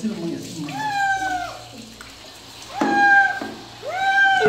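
A wet cat meowing while being bathed under a shower: two long, drawn-out meows, each rising then falling, one about a second in and one near the end.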